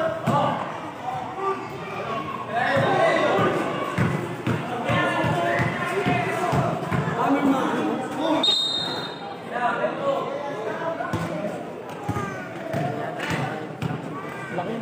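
Basketball bouncing and being dribbled on a concrete court, with spectators and players shouting and chattering throughout.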